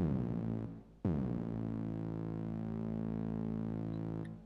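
Synthesized drum hit from NI Massive with tube distortion and reverb on it: a note that drops sharply in pitch and dies away. About a second in, another note drops in pitch and then holds as a steady tone for about three seconds, sustaining because the amp envelope has not yet been shaped.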